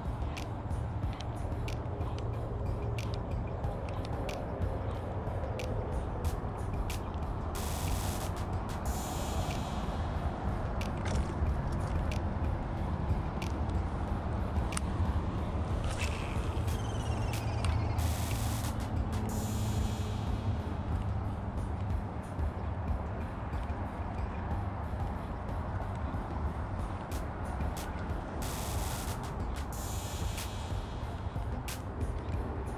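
Wind buffeting the microphone, a steady low rumble, with scattered sharp clicks and three short hissing bursts about ten seconds apart.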